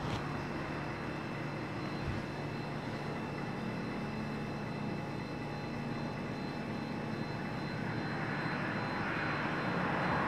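Steady background drone with faint hum tones running through it, growing slightly louder near the end.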